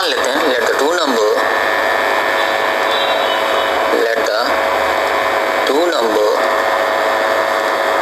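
Loud, steady hiss with a constant machine-like hum, as from a small motor or fan, with a person's voice speaking briefly three times: at the start, about four seconds in and about six seconds in.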